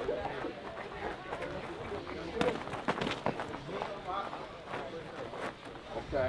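A handful of sharp thumps from boxing gloves landing, clustered a little past the middle, over low chatter from onlookers.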